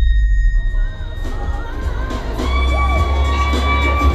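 Background music with heavy bass, joined from about a second in by an audience cheering in a large hall.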